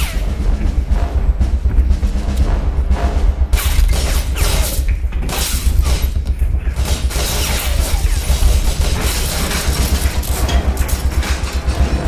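Loud action-film score with a fast, pulsing bass beat, with several sudden crashing hits laid over it.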